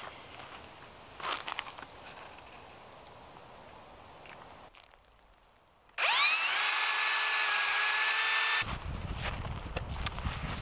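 Cordless drill boring a hole through a wooden trellis post. About six seconds in the motor whines up to speed, runs steadily for about two and a half seconds, then stops suddenly.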